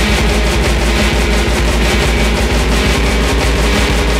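Hard techno from a DJ mix: loud, dense electronic music driven by a steady, evenly repeating kick drum beat.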